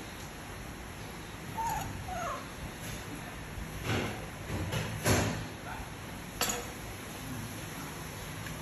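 Baby macaque giving two short squeaks about two seconds in, followed by three sharp clicks and knocks spaced a second or so apart.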